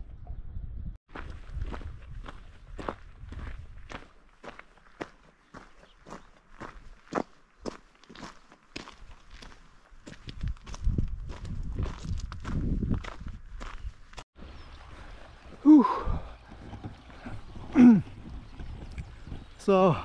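A hiker's footsteps crunching on a gravel track, about two steps a second, with a low rumble for a few seconds in the middle. Near the end come two short, loud pitched calls.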